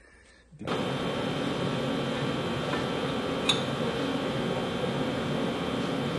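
A steady mechanical hum, like a running machine or fan, comes in suddenly less than a second in and holds even, with one sharp click midway.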